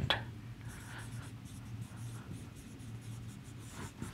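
Marker pen writing on a whiteboard: a series of short, faint strokes.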